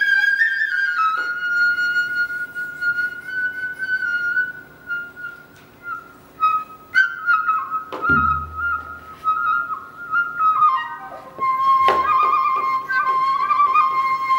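Sogeum, a small Korean transverse bamboo flute, playing a slow solo melody of long held notes that bend and slide, stepping down in pitch overall. Two low thumps come in, about halfway through and again about two seconds before the end.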